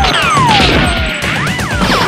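Added gunfight sound effects over action music with a steady beat: several overlapping falling whistles like bullet ricochets, one that rises and falls about one and a half seconds in, and sharp impact hits.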